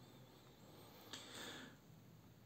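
Near silence, with one faint breath drawn in close to a studio condenser microphone a little past halfway.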